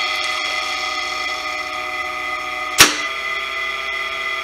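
Small three-phase induction motor, running on a single-phase supply with a capacitor, humming steadily on a star-delta starter. About three seconds in, a sharp contactor clack as the timer switches the starter from star to delta, and the motor's hum changes after it. In delta it runs smoother.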